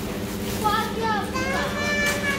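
Children's high voices calling out, with some long drawn-out notes, over a steady low hum.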